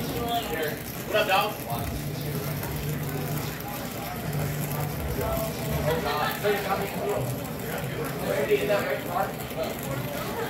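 Indistinct talking that the recogniser could not make out, in short stretches about half a second in and again from about six seconds, over a low hum that comes and goes.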